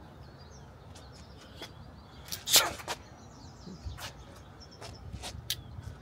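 A short, sharp rush of noise about two and a half seconds in, as a pocket knife is drawn from a trouser pocket and thrust forward. A few small clicks and faint bird chirps sit over quiet outdoor background.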